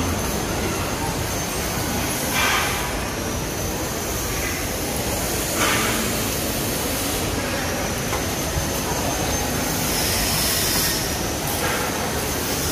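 Steady indoor shopping-mall ambience: a low, even rumble with a faint high whine, and brief hissy swells about two and a half and five and a half seconds in.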